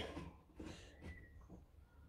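Near silence: faint room tone with a few faint soft ticks from a small plastic action-figure hand being handled in the fingers.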